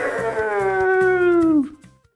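A man's voice in one long drawn-out call that slides slowly down in pitch and stops shortly before the end, over faint background music.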